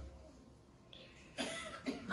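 Near silence, then about one and a half seconds in a short, breathy vocal noise from a person, like a cough or a sharp breath.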